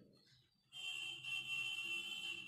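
A steady high-pitched tone with several fainter steady tones above and below it comes in suddenly under a second in, after a moment of near silence, and holds unchanged.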